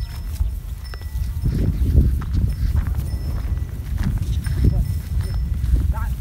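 Steady low rumble of wind on the microphone over water buffalo walking through dry grass, with faint hoof steps.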